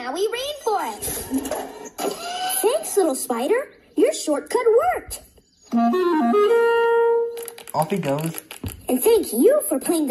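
Cartoon soundtrack played through a TV speaker: sing-song character voices over orchestral background music with woodwinds. Between about six and seven and a half seconds in, the voices give way to a run of musical notes ending in a held tone.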